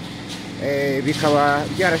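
A person's voice, over a steady low hum.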